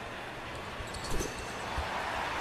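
Basketball court sounds over a steady arena background: the ball shot at the free-throw line, then a few dull thuds in the second half as it comes off the rim and bounces on the hardwood.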